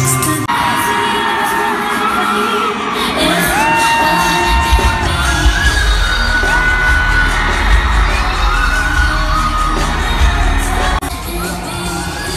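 Live arena concert recorded from the crowd: a female pop singer holds a series of long, high notes that slide between pitches, in a section billed as her whistle register. The notes sit over a backing track whose heavy bass comes in about halfway through, with the crowd screaming and cheering.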